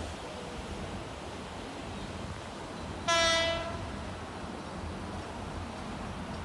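Horn of a KRL Commuterline electric train: one short blast of a single steady tone about three seconds in, fading out after about half a second, over a steady low background rumble.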